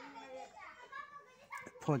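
Faint children's voices chattering in the background, then a man starts speaking near the end.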